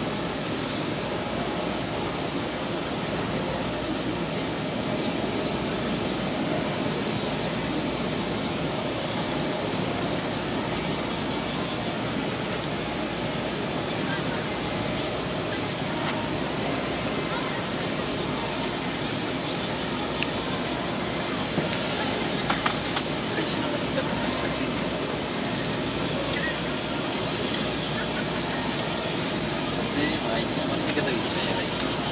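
Steady outdoor hiss with an indistinct murmur of people's voices. A few sharp clicks come about two-thirds of the way through.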